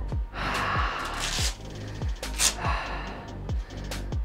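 A man breathing hard after a set of curls: a long exhale about half a second in and a sharp gasp about two and a half seconds in. Under it runs background music with a steady beat of about two beats a second.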